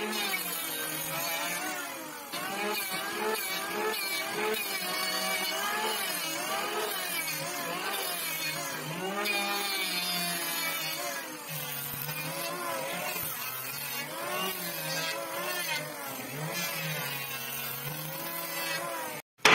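Electric hand planer running and cutting along a wooden beam, its motor whine dipping and rising in pitch as the blades bite into the wood and ease off over repeated passes.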